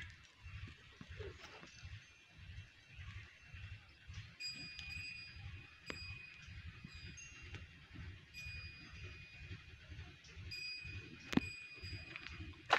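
Small bell ringing faintly in short repeated tones, with a sharp knock near the end.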